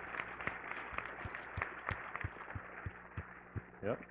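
Audience applauding lightly: scattered, uneven hand claps over a hiss of many hands.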